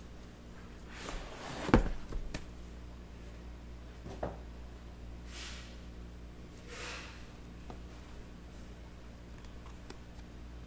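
Handling noise on a desk: a sharp knock just under two seconds in, a lighter knock about four seconds in, and two soft swishes of movement later, over a steady low room hum.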